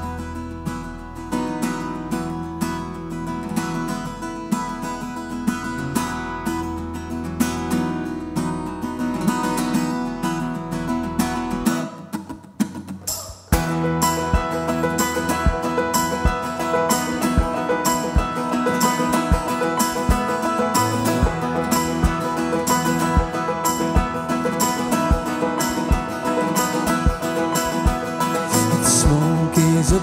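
Live folk band playing an instrumental intro: picked banjo, strummed acoustic guitar and keyboard over a low sustained bass. After a brief drop about twelve seconds in, the band comes back fuller and louder with a steady beat.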